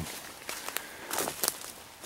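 Footsteps on a forest floor of dry leaf litter and twigs, with a few scattered light crackles.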